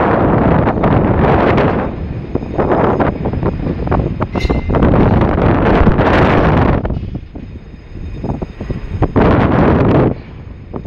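Wind buffeting the microphone high up on a container quay crane, gusting in waves, with a brief metallic ring about four and a half seconds in.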